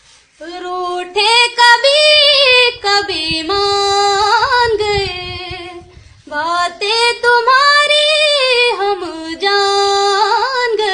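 A woman singing unaccompanied in a high voice, with sliding, ornamented notes in two long phrases and a short break about six seconds in.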